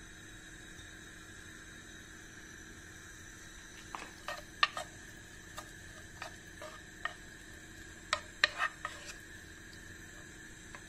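A wooden spoon stirring chopped onion and garlic in a nonstick frying pan, knocking and scraping against the pan in a string of short clicks from about four seconds in, over a faint steady hum.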